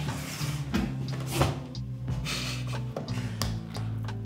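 Cardboard product box being handled and its lid pulled open, giving a few short scrapes and rustles over a bed of background music with steady low notes.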